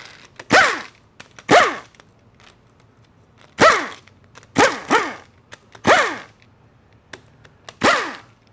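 Impact wrench fired in seven short bursts, each ending in a falling whine, backing out the valve body bolts of a TH400 automatic transmission.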